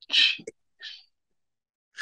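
A man's short breathy exhale at the start, followed just under a second in by a fainter, briefer breath sound.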